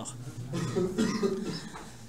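A man clearing his throat with a soft cough, quieter than his speech.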